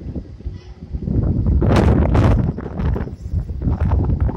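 Wind buffeting the microphone of a phone camera carried along on a moving ride: a rough, gusty rumble that swells loudest about a second in and eases off toward the end.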